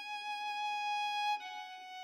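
Soundtrack music: a single long held violin note that steps down to a slightly lower note about one and a half seconds in and begins to fade.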